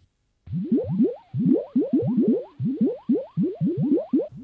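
A rapid, irregular string of cartoon bubbling "bloop" sound effects, each a short upward pitch slide, about six or seven a second, starting half a second in.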